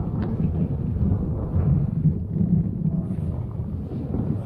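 Electric all-terrain vehicle with one electric motor per side pivoting on the spot on snow, its two sides turning in opposite directions: a steady low rumble with no breaks.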